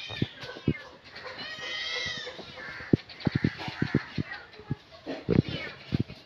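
A cat meowing. The longest call rises and falls about one and a half seconds in, among short knocks.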